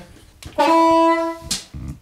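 Diatonic harmonica, a Seydel 1847, playing one steady note held for about a second as a test to set the recording input levels, with a short click as the note ends.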